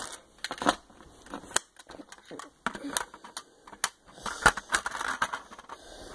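Handling noise: irregular light clicks and rustles as a hand moves the camera and the plastic Lego model about.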